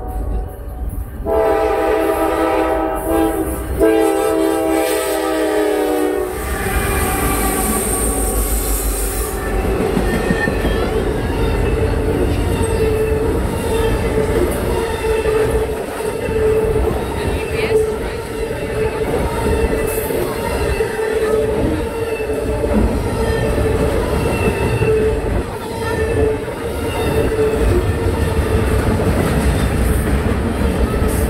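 Diesel freight locomotive horn sounding two blasts, the second longer, as the train approaches. It is followed by a long intermodal freight train rolling past close by, with steady wheel-on-rail rumble, clicking over rail joints and a steady ringing tone.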